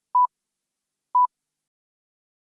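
Two short, identical electronic beeps at one steady pitch, about a second apart, with silence around them.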